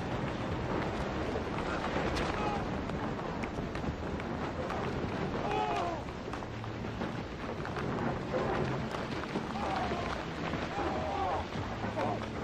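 Aftermath of a quarry blast: a steady, dense noise of rock debris falling and dust settling, with a few short voice-like cries.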